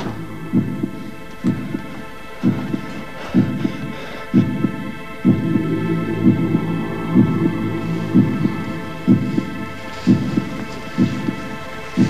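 A low thudding pulse, about once a second like a heartbeat, over a steady many-toned droning hum.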